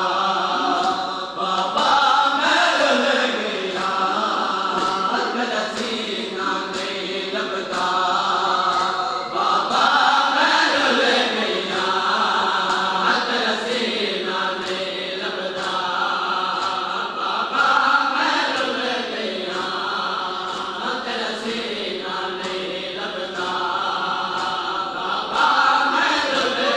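Men chanting a nauha (Shia lament) together, with a steady rhythm of hands striking chests in matam keeping time under the singing.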